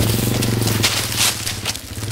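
Dirt bike engine running at a steady low speed, with irregular scraping and crackling noise over it.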